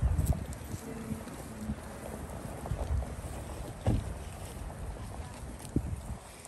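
Wind buffeting the microphone as an uneven low rumble, strongest at the start, with two short knocks, one about four seconds in and one near the end.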